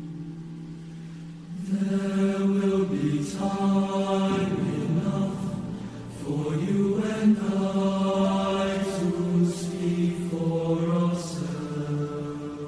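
Boys' choir singing sustained chords: soft at first, then entering fuller and louder about a second and a half in, with long held notes.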